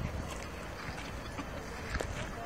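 Wind buffeting the microphone as a steady, uneven low rumble, over faint outdoor background noise.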